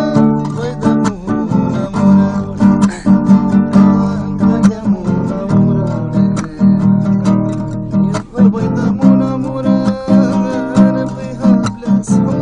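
Guitar playing a song, strummed chords with a regular rhythm of many quick strokes.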